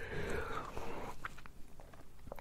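A soft breath close to the microphone, then a few small mouth clicks in a pause between spoken sentences.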